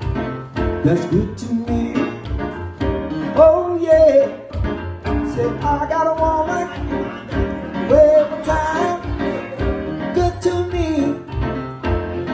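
A man singing live while playing an electronic keyboard. His voice holds and bends long notes over keyboard chords, with a steady, evenly spaced low pulse underneath.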